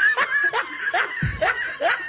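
Young women laughing in quick, repeated bursts, with a dull low thump a little past the middle.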